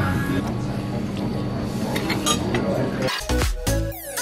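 Cutlery clinking against plates over steady background music; about three seconds in, an electronic dance track with a heavy beat cuts in.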